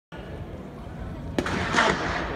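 Starting pistol fired once, a sharp crack about a second and a half in, followed by a louder burst of noise and voices near the end.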